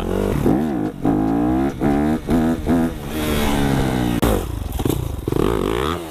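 Dirt bike engine revving up and down as it is ridden, its pitch rising and falling several times in quick succession. There is a single sharp knock about four seconds in.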